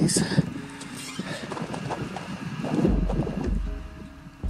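Footsteps crunching on loose, popcorn-textured weathered clay ground, uneven and irregular, with a low rumble about three seconds in.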